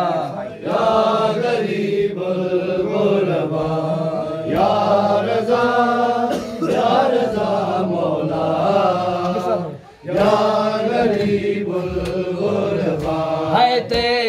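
A group of men's voices chanting an Urdu noha, a Muharram lament, with melodic rising and falling lines over a steady low drone of many voices, and a brief break about ten seconds in.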